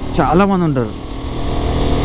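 Motorbike running while being ridden, with a steady low rumble of engine, wind and road noise. A voice speaks briefly in the first second.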